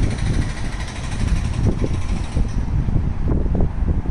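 Passenger train running, heard from on board: a steady low rumble with a faint high-pitched whine over the first couple of seconds.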